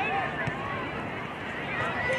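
Many overlapping distant voices of soccer players and sideline spectators calling and shouting, with no clear words, over steady outdoor background noise.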